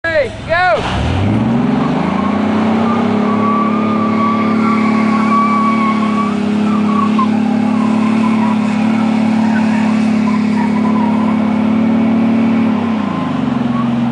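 Pickup truck engines of a Ford Ranger and a Toyota Hilux strapped together in a tug of war. The revs climb sharply about a second in and are held high and steady for about ten seconds under full load with the wheels spinning in dirt, then ease off near the end.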